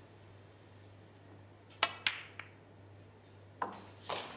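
Snooker shot on the pink: a sharp click as the cue tip strikes the cue ball, a louder click about a quarter second later as the cue ball hits the pink, then a lighter knock and, over a second later, another click as the balls run on. The pink is potted. Beneath it is a faint, steady low hum of the arena.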